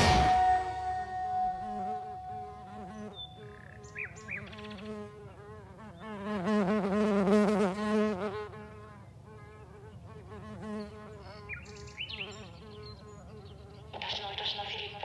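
Buzzing of flying insects, the drone wavering up and down in pitch as they move, swelling loudest in the middle and then falling back, with a few short high chirps.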